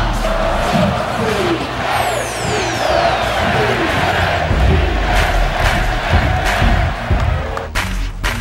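Large stadium crowd cheering and shouting over music.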